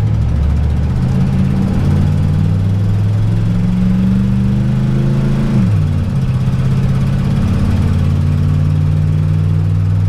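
Motorhome's gasoline engine heard from inside the cab while driving: its note climbs slowly as the vehicle gathers speed, drops sharply a little past halfway, as at a gear change, then holds steady.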